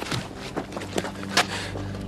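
A few short scuffs and knocks on a hard ground surface, from a person moving on all fours on concrete, over a faint steady low hum.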